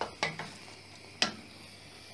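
Wooden spatula knocking against the rim of a stainless steel pot: quick knocks right at the start and a quarter second in, then one sharp, loudest knock a little past a second in.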